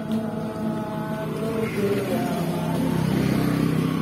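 A motor vehicle's engine running nearby, a steady hum that grows a little louder over the last couple of seconds.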